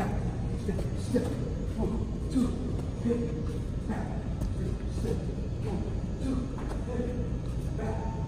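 Boxing gym room noise during a footwork drill: a steady low rumble with scattered short, muffled voice sounds and a few soft shoe steps and scuffs on the mat.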